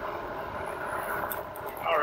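Steady rushing noise of a fat-tyre electric bike ridden at about 22 mph on a dirt path: wind on the microphone and tyres rolling on dirt.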